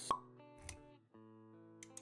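Motion-graphics intro sound effects over sustained music notes: a sharp pop just after the start, a softer low thud about two-thirds of a second in, then held notes with a few quick clicks near the end.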